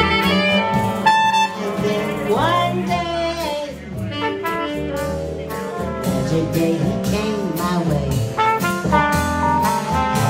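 Live jazz band music: horn lines and a woman singing over a steady bass line.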